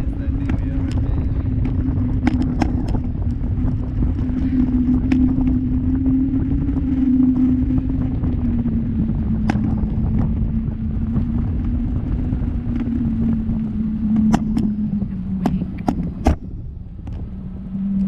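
Motorboat engine running steadily with low rumble, its pitch easing down over the last few seconds, and a few sharp clicks scattered through.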